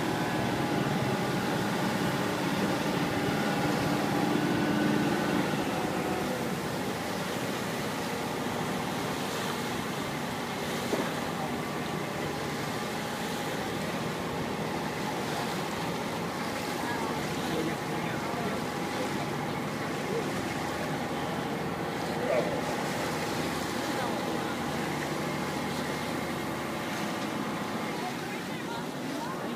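A boat under way at speed: its engine runs with a steady hum under the rush of wind and water along the hull.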